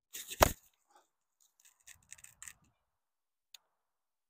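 An ash hurley strikes a sliotar once, giving a sharp crack about half a second in, just after a brief swish of the swing. This is a whipped side-spin strike. Faint rustles and a small click follow.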